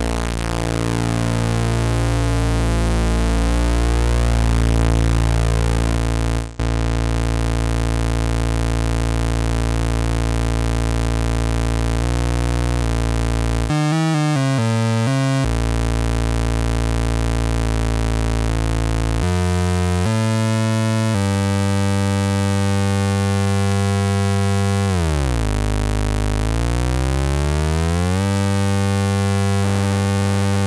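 Cherry Audio Minimode software Minimoog synthesizer holding a continuous buzzy, clangorous tone, its oscillator 3 set to an audible pitch and frequency-modulating the other oscillator. The timbre shifts in steps as the modulation is changed, with a fast warble around the middle and a pitch swoop down and back up near the end. There is a brief break about six seconds in.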